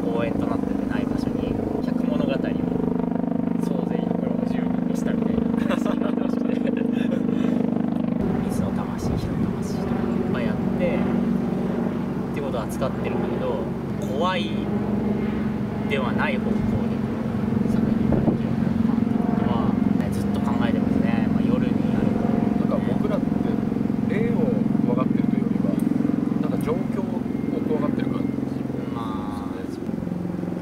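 Two men talking in Japanese over a low, steady drone whose pitch shifts to a new level every few seconds.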